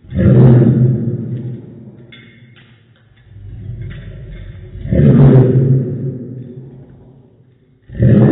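A yellow Labrador retriever's barks played in slow motion, each one deep and drawn out, fading over about two seconds. Two full barks come at the start and about five seconds in, and a third begins right at the end.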